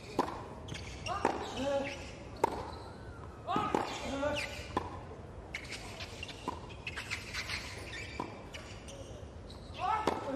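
Tennis rally on a hard court: sharp racket-on-ball strikes about every 1.2 seconds, traded back and forth between baseliners. The players grunt with several of the shots, short vocal efforts that fall in pitch.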